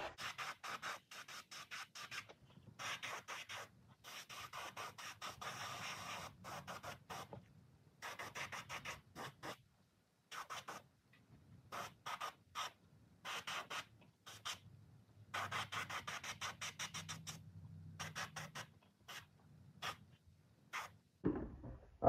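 Airbrush spraying a base coat of paint: a faint hiss of air and paint in short bursts, several a second, in runs broken by brief pauses.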